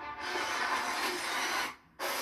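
Movie trailer soundtrack: music under a dense rushing noise of sound effects, which cuts off suddenly near the end into a brief silence.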